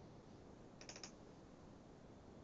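Near silence with a quick cluster of faint clicks about a second in: a computer mouse double-clicking to open a file.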